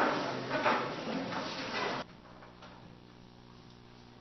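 Rustling and light knocking picked up by a close lectern microphone as papers and objects are handled, cutting off abruptly about two seconds in and leaving only a faint steady hum.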